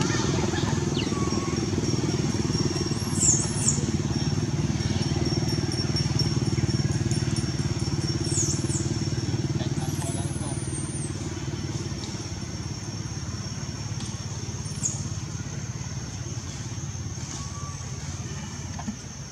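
Steady low rumble of a nearby motor vehicle engine, easing off slowly in the second half. A thin high insect-like whine runs over it, with a few short high-pitched sweeping calls.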